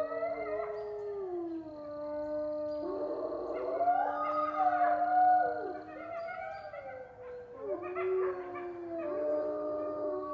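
A chorus of wolves howling: several long howls overlap at different pitches, each gliding slowly up and down, with the howls rising and swelling about four to five seconds in.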